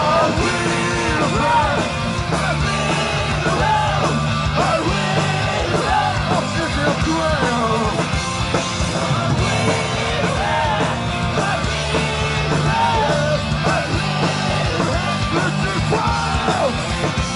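Hardcore punk band playing live: distorted electric guitar and drums driving steadily under shouted vocals, recorded from the crowd.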